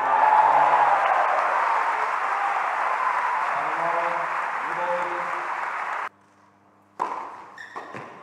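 Tennis crowd applauding after a point, with a few voices calling out, cut off abruptly about six seconds in.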